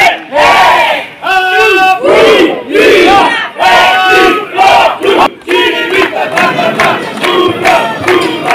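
A group of firefighters shouting a rhythmic cheer in unison, a loud string of shouted syllables following one another without pause.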